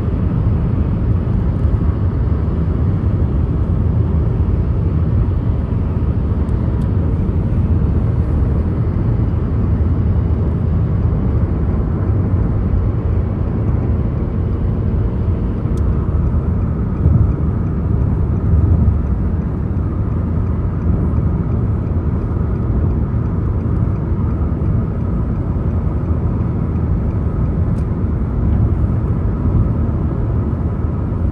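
A car driving at road speed, heard from inside the cabin: a steady low rumble of road and engine noise.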